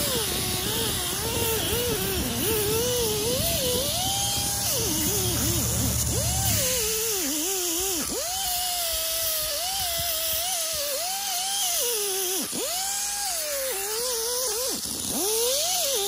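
Pneumatic die grinder working on a cast-iron engine flywheel. Its whine keeps rising and falling in pitch as it loads against the metal and frees up, over a steady high hiss of air. A low hum underneath stops about six and a half seconds in.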